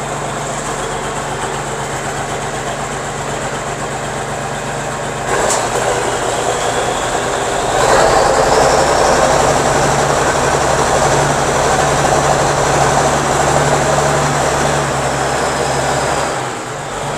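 Allis-Chalmers 8050 tractor's 426 six-cylinder diesel running through a muffler eliminator instead of a muffler. It idles, then is run up in two steps, about five and eight seconds in, and is held at the higher speed.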